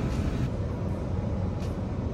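Steady low rumble and hiss inside a parked car with its engine running.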